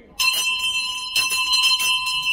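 Town crier's handbell rung in a run of strokes from just after the start, several quick strikes with the bell's ringing held on between them.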